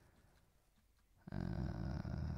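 Near silence, then about a second in a man's voice holds a long, drawn-out "uh" hesitation.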